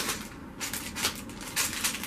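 Clear plastic bag crinkling as a green LEGO baseplate is pulled out of a plastic LEGO storage box and handled, in a run of short, irregular crackles.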